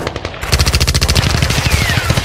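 Rapid automatic gunfire sound effect: after a brief lull, a fast, even run of shots starts about half a second in, with a short falling whine near the end.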